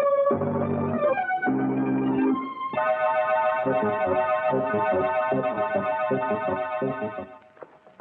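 Organ music bridge: three short chords, then from about three seconds in a long held chord over shifting low notes, fading out near the end. It marks a change of scene in the radio drama.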